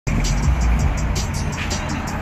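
Car engine noise heard from inside a car as a BMW sedan ahead accelerates away, mixed with music with a quick, steady beat.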